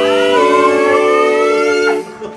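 A long, high-pitched scream that rises steadily in pitch for about two seconds and breaks off near the end. It is a person's cry of surprise at a homecoming, heard over held chords of background music.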